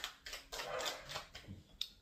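A tarot deck being shuffled by hand: a quick, uneven run of soft flicking and rustling clicks as the cards slide against each other.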